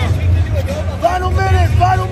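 Voices shouting in drawn-out, arching calls from about a second in, over a steady low rumble of hall noise around a grappling mat.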